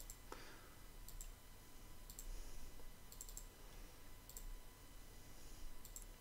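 Faint computer mouse clicks, scattered single and double clicks spread over several seconds, as data fields are picked from a dropdown menu. A faint steady hum sits underneath.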